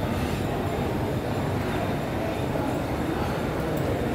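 Steady low background rumble of a shopping mall's interior, even throughout with no distinct events.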